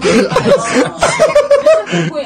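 Several people laughing and chuckling together, close and loud.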